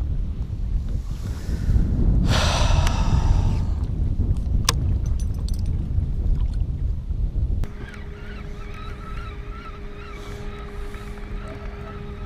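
Wind rumbling on an open boat's microphone with water against the hull, with a short whoosh about two seconds in and a sharp click near five seconds. From about eight seconds in this gives way to a quieter steady hum with held tones.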